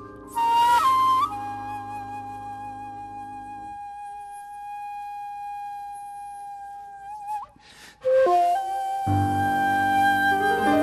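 A shakuhachi plays a long held note that opens with a breathy, bending attack. After a short breath it moves on to a new phrase. A keyboard accompaniment underneath drops out partway through and comes back near the end.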